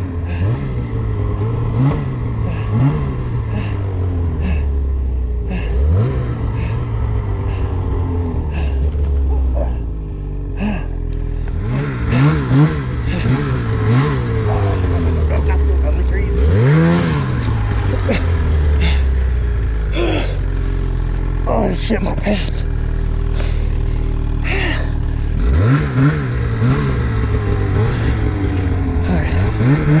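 Ski-Doo Summit 850 mountain snowmobile's two-stroke engine revved in repeated throttle bursts while pushing through deep powder, its pitch climbing quickly and falling away again. The bursts come in clusters near the start, around the middle and near the end, with steadier running between.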